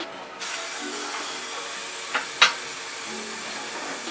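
Steady hiss of dental equipment, such as the air-water syringe or suction, starting about half a second in, with two sharp clicks of instruments near the middle.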